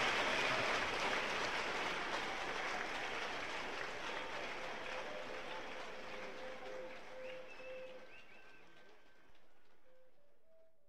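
Live concert recording: audience applause and crowd noise fading steadily away, with a few faint held instrument tones in the second half.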